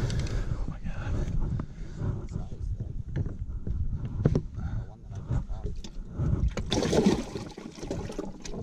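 Handling noises on a bass boat deck: a run of knocks, taps and rustles as a caught bass is held over the landing net and the livewell is reached into, over a steady low rumble. A louder scuffle comes about seven seconds in.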